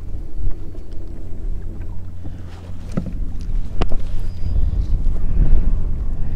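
Wind buffeting the microphone on a moving kayak: a steady low rumble that grows stronger in the second half, with a few sharp clicks about three and four seconds in.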